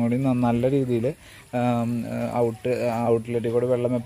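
Speech only: a voice talking, with a brief pause about a second in.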